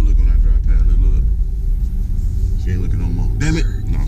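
Steady low rumble of a car's engine and tyres heard inside the cabin while driving, with a man's voice murmuring over it.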